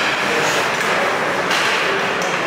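Steady noise of an ice hockey game in play in an indoor rink: skates scraping the ice, with a few faint stick and puck knocks.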